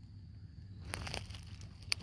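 Faint outdoor background with a few light crackles about a second in and one sharp click just before the end.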